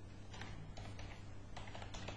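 Computer keyboard being typed: a run of faint, irregular key clicks as a line of text is entered.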